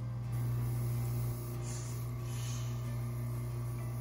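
OSITO AC110 oxygen concentrator running: a steady low hum from its compressor, with a soft puff of hissing air about two seconds in as the machine vents on its pressure-swing cycle.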